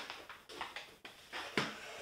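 Rustling and light knocks of small objects and furniture being handled, with a sharper knock about one and a half seconds in.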